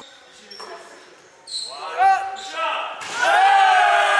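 A basketball bouncing on a hardwood gym floor amid players' voices, which swell about three seconds in into a loud, long group shout that carries on to the end.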